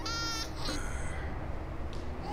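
A baby crying: one short, high-pitched wail at the start, then only a low, steady background hum.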